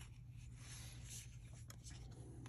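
Faint rustle and slide of cardboard trading cards being handled, with a few light clicks near the end as one card is pulled from the stack.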